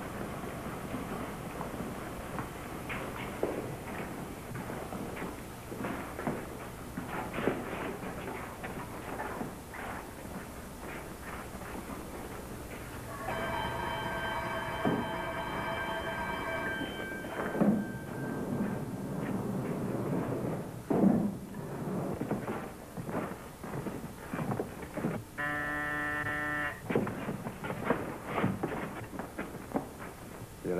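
Irregular knocking and clatter of a metal workshop. A steady buzzing alarm tone with many overtones sounds for about three seconds midway and again for about a second and a half near the end: the electric-eye metal detector being tripped.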